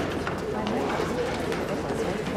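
Indistinct chatter of many voices, with shuffling and small knocks of people moving about on a stage.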